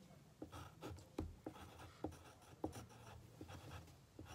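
Drawing on paper: faint scratching strokes, with short ticks about two or three times a second as the tip meets the page.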